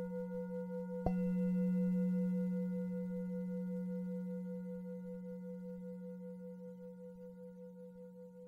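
A Buddhist bowl bell (singing bowl) struck once about a second in. Its low hum and several higher overtones ring on together, one of them wavering, and slowly fade away.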